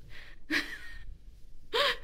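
A woman's audible breaths between sentences: a soft breath, then a short breathy sound about half a second in, before her voice starts again near the end.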